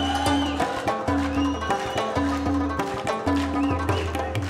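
Live Afghan art music from a small ensemble: tabla strokes with deep bass notes from the larger drum, sitar and harmonium, and a melody that slides between notes.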